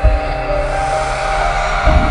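Electronic intro music for a channel's logo sequence: sustained synth notes over a swelling rush of noise, with deep bass hits at the start and again near the end.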